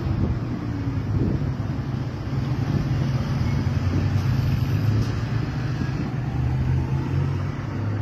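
Street traffic noise with a steady low hum, and a car driving past about halfway through.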